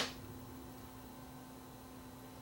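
A single sharp click at the very start as the small CRT viewfinder and its brightness control are handled, then only a faint steady low hum with room noise.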